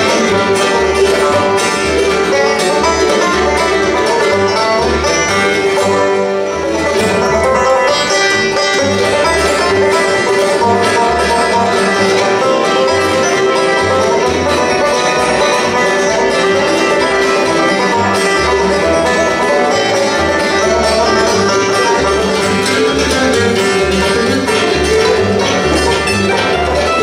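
Live bluegrass band playing: banjo, fiddle, mandolin, acoustic guitar and upright bass together, the bass keeping a steady, even beat.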